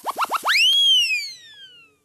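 Electronic transition sound effect of a TV programme ident: a quick run of short rising chirps that speed up, then one long tone that sweeps up and glides slowly down, fading away.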